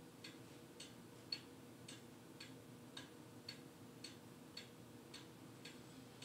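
Faint, even ticking of a clock, just under two ticks a second, in an otherwise near-silent room.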